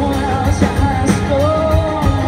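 Live country-rock band playing: a male lead vocal sings over electric guitar and drums, holding a long note in the second half.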